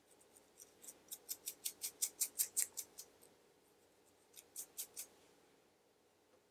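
Fast scratching strokes over a dry, dandruff-flaked scalp through thick curly hair, about five a second and growing louder for a couple of seconds. After a short pause come three more strokes.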